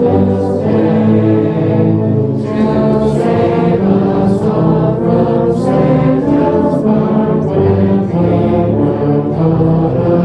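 Massed tubas and euphoniums playing a Christmas carol together in full, low sustained chords.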